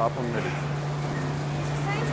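Print-shop machinery running with a steady low hum under an even rushing noise.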